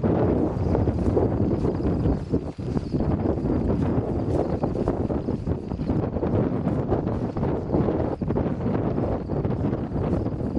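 Wind buffeting the microphone, loud and continuous, with the ridden horse's footfalls as it walks through dry grass.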